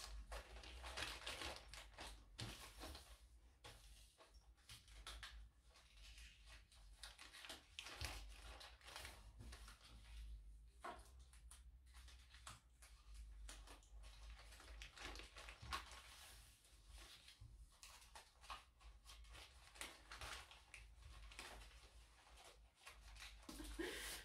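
Faint, irregular rustling and crinkling of printed paper as folded paper bows are handled and pressed onto the sides of a paper-wrapped gift.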